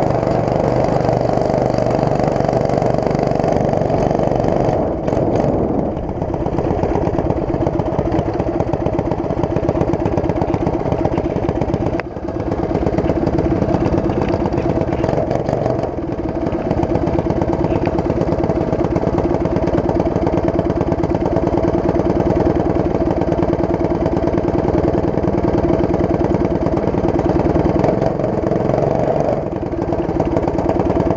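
Racing kart engine running steadily at low revs, heard close up from on board as the kart rolls slowly, with a brief change in engine note about 6 s and again about 16 s in.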